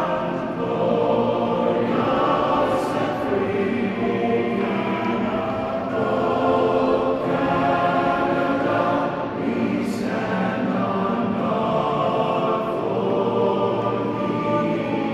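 A choir singing a national anthem in long held phrases, with short breaks between phrases every few seconds.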